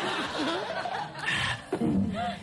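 Studio audience laughing and chuckling, with a louder burst of laughter a little past the middle.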